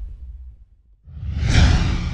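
Two sound-effect whooshes over a deep rumble for an animated logo intro. The first dies away at the start, and after a brief gap a second swells up about a second in and is loudest near the end.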